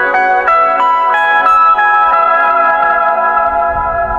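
Electric guitar played solo: a quick run of about eight single picked notes, then one high note held and left ringing for the last two seconds.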